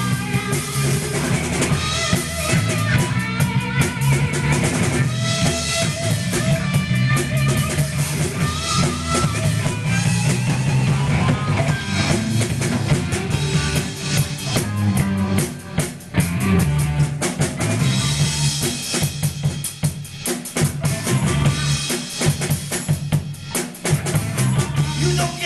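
Live rock trio playing an instrumental passage: electric guitar, bass guitar and drum kit, with the kick and snare to the fore.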